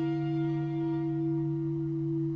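Background music score: one sustained chord held steady, with no new notes entering.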